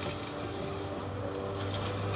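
A screwdriver working on the mounting screws of a car door speaker: faint metal scraping and a small click at the start, over a steady low hum.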